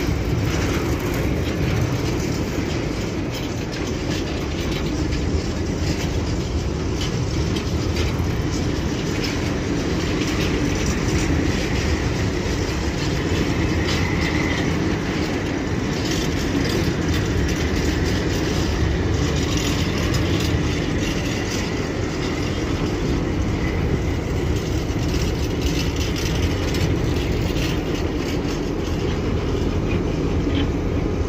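Freight tank wagons rolling slowly past at close range: a steady rumble of wheels on rail with faint clicking over the rail joints, and a brief faint squeal near the middle.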